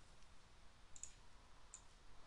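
Two faint computer mouse clicks over near silence, one about a second in and one near the end.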